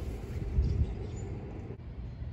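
Outdoor background noise: a low steady rumble with a louder swell about half a second in. It drops out briefly near the end.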